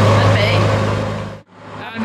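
Narrowboat engine running steadily under way, a low even hum. It cuts out abruptly about one and a half seconds in and then comes back.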